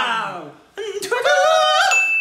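A man's voice sliding down and trailing off, then singing a high falsetto, yodel-like line that climbs and holds its top note. Just before the end a short steady high chime begins.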